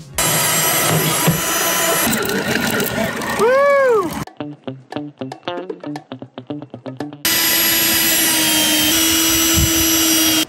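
Background music with a short laugh early on. In the last few seconds a cordless drill runs steadily, with a held whine that rises slightly once, as it drives screws into a camera mounting box.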